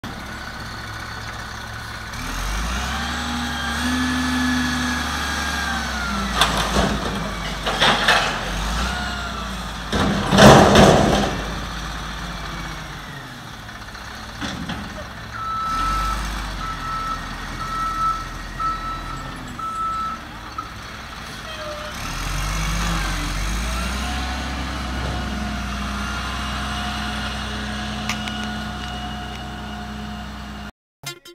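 Front-loader garbage truck's diesel engine revving up and down as it works its hydraulic forks, with several loud bangs between about six and eleven seconds in as a container is emptied. Midway a run of reversing beeps sounds, then the engine revs again as the truck pulls away.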